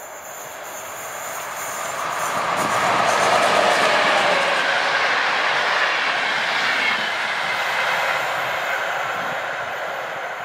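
Electric passenger train passing at speed: a rush of wheels on rail that builds over the first few seconds, is loudest about three to four seconds in, then fades slowly as the coaches move away.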